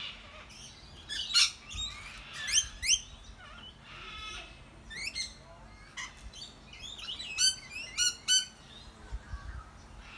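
Several rainbow lorikeets calling: short, high-pitched rising screeches that come in clusters, loudest about a second and a half to three seconds in and again near eight seconds.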